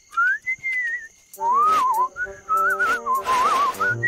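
A person whistling: one rising note held for about a second, then, after a brief pause, a wavering, meandering tune. Background music chords come in under the tune, with a few soft short hits.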